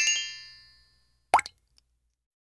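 Channel logo sound effect: a quick rising run of bright chime notes rings on and fades away over the first second, followed by a single short, sharp pop about a second and a half in.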